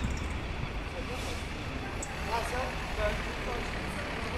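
Urban street ambience: a steady low rumble of road traffic, with faint voices of people talking nearby in the middle stretch.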